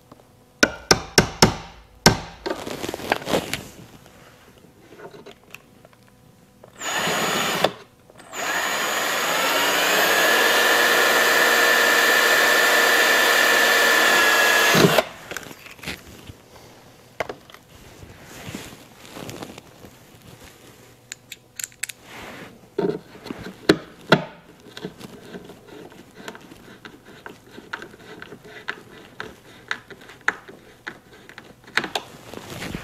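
Cordless drill drilling a hole in a carbon-fibre side skirt for a number 10 screw: a short burst, then after a brief pause a run of about seven seconds whose whine rises as it spins up and then holds steady. Sharp clicks and taps of handling come before and after the drilling.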